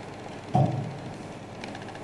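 Room noise with one short, dull thump about half a second in, followed by a few faint clicks.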